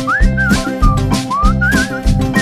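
Song playing: a whistled melody that slides up and wavers over a band's steady beat.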